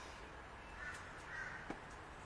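Two faint, short animal calls about half a second apart, followed by a small click, over a low steady background.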